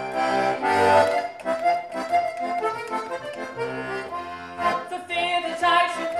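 Button accordion playing a traditional folk tune, melody over held chords. Near the end a woman's singing voice comes back in.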